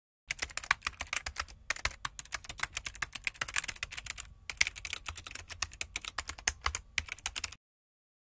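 Typing sound effect: a fast, uneven run of key clicks, broken by two short pauses, about 1.7 and 4.4 seconds in, and stopping shortly before the end.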